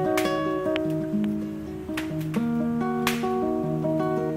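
Acoustic guitar music: plucked notes ringing over a low bass line, with a few sharp accents.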